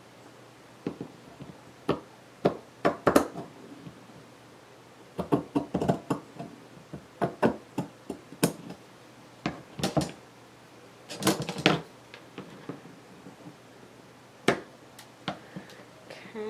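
Pinking shears cutting through lace: a run of sharp metal snips in irregular clusters with short pauses between them.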